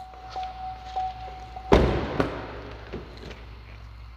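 A 2019 Chevrolet Cruze's door-open warning chime repeats steadily, then stops when a car door slams shut a little under two seconds in. A lighter click follows about half a second later.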